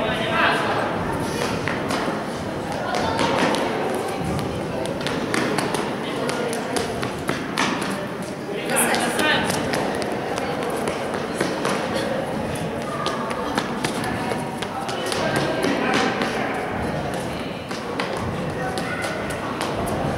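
Indistinct chatter of children and adults in a large indoor sports hall, crossed by scattered taps and thumps, among them a child's running footsteps on the court.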